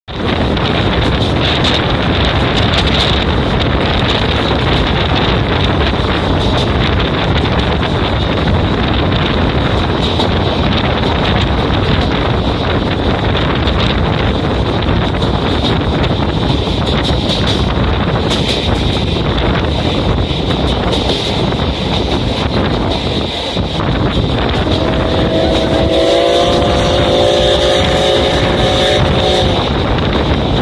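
Loud, steady wind rush and rail running noise at the open window of a moving passenger coach. Near the end a horn or whistle sounds with several held tones together.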